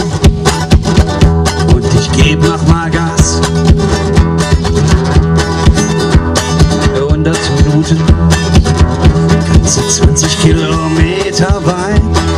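Live blues played instrumentally: an acoustic guitar picked in a steady, driving rhythm over repeating low notes, with a harmonica coming in near the end.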